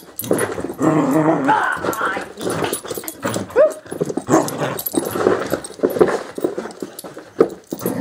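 Small dog vocalizing in rough play, with yips and short whines coming almost without a break, mixed with a woman's voice.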